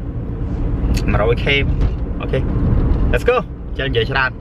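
Steady low rumble of road and engine noise inside a car's cabin while it is being driven, heard under a man's short spoken phrases.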